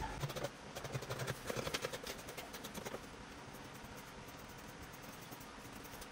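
Scissors cutting through folded cloth: a quick run of crisp snips in the first half, then only faint room tone.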